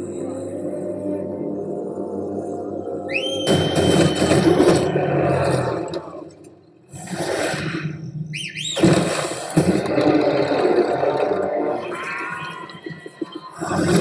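Film teaser soundtrack: a low, sustained cinematic music drone, broken about three and a half seconds in and again near nine seconds by rising whooshing swells that open into loud, dense passages, with a short drop to quiet between them.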